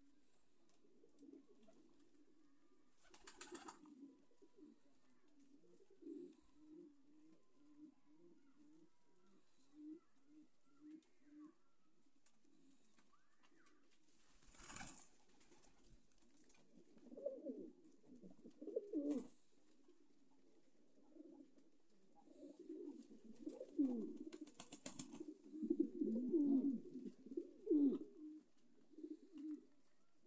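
Domestic fancy pigeons cooing over and over in low, throaty calls, growing louder and busier in the second half. About four short noises cut across the cooing.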